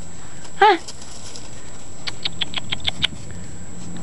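A quick run of about eight light, sharp clicks over roughly a second, from Great Bernese puppies scrabbling and playing with a toy on pea gravel, over a steady background hiss.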